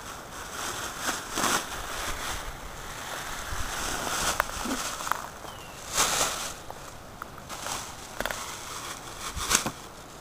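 Rustling and scuffing in dry grass and weeds from someone moving and handling things close to the camera, with a few louder scrapes about one and a half, four and a half, six and nine and a half seconds in.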